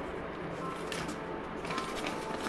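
Soft background music with held notes, with brief crackles of a paper instruction leaflet being unfolded by hand, about a second in and again near the end.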